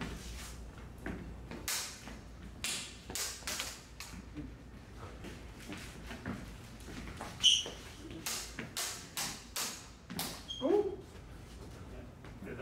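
Duelling LED lightsabers' polycarbonate blades clacking against each other in quick runs of sharp hits, with footsteps on a wooden floor. One hit about halfway through is the loudest and rings briefly.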